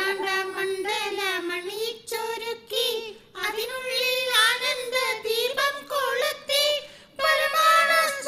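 A single high-pitched, child-like voice singing a school prayer song in long, wavering melodic phrases, with short breaths between them.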